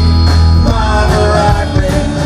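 Live country-rock band playing: electric guitars, bass guitar and drum kit, with a strong held bass note through the first part.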